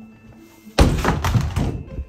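Bedroom door kicked open: a loud bang about a second in, followed by close rattling knocks lasting most of a second.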